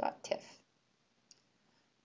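A single faint computer mouse click a little over a second in, in near-silent room tone, after a voice trails off in the first half-second.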